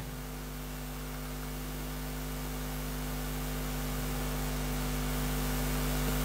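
Steady electrical mains hum with a buzz of low overtones over a hiss, slowly growing louder.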